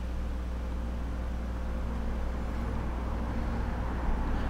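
Leadshine hybrid stepper motor on a CS-D508 closed-loop drive, turning slowly at a low feed rate: a steady low hum with a faint higher tone.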